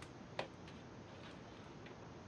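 Quiet room tone with one sharp click about half a second in and a few fainter ticks, from a wiring harness being handled on a workbench.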